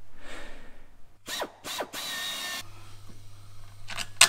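Hand-tool work on a steel ladder bracket under a van's sill: mechanical clicking and clatter, with two quick falling squeaks about a second and a half in and a short burst of noise just after the middle, over a steady low hum.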